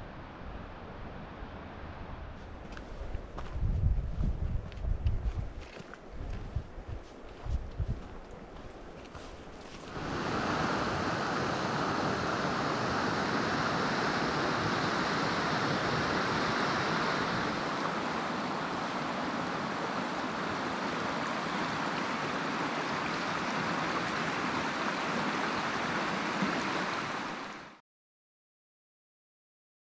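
The Deschutes River rushing through a stretch of whitewater rapids: a loud, steady, even rush that starts abruptly about ten seconds in and cuts off just before the end. Before it there is a quieter stretch with several low thumps and rumbles, like wind buffeting the microphone.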